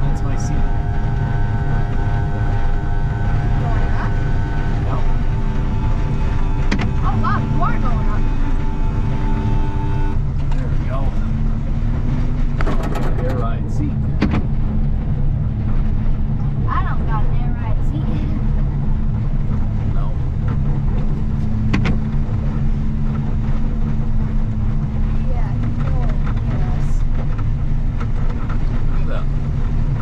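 Snowplow engine running steadily with a deep rumble as the machine pushes slush along the road. A steady whine sits over it for about the first ten seconds, then stops.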